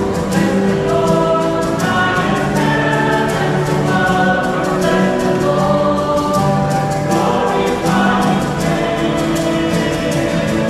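A choir singing a hymn with long held notes and instrumental accompaniment, steady throughout.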